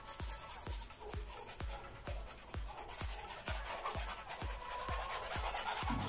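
Paintbrush rubbing acrylic paint across a stretched canvas in short, gentle strokes, under background music with a steady beat of about three thumps a second.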